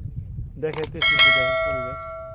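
Two quick clicks, then a bright bell ding about a second in that rings on and fades: the click-and-bell chime of a subscribe-button overlay.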